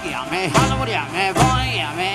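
A live Latin tropical dance band playing with a steady beat, with bass, keyboards, guitar and percussion.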